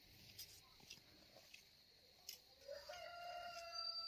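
Faint rooster crowing: one long, held call beginning about two-thirds of the way in, after a few faint clicks.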